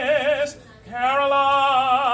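A man singing solo with a wide vibrato: a short note, a brief pause for breath, then a long held note.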